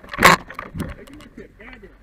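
Handling noise from a firefighter's gear: a gloved hand and turnout-coat sleeve knock and rub against the helmet-mounted camera, in a run of clicks and rustles. The loudest knock comes about a quarter second in.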